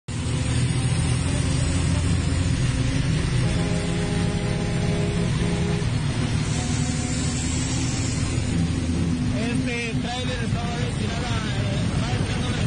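Extraurban bus's engine and road noise heard from inside the moving bus, a steady loud drone. About three and a half seconds in, a steady pitched tone sounds for roughly two seconds with a short break near its end. Voices are heard near the end.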